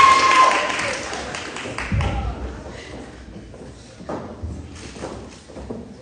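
A held whoop and voices at the start fade away, followed by a few scattered thuds and taps of shoes on a wooden stage, the strongest about two and four seconds in.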